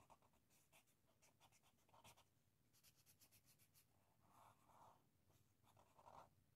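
Faint scratching of a black felt-tip marker on paper, in short intermittent strokes as lines are drawn.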